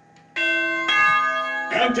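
Pinball machine's electronic bell-like chime: a sudden loud sustained chord that changes to a second chord about half a second later and stops shortly before the end. A man's voice begins near the end.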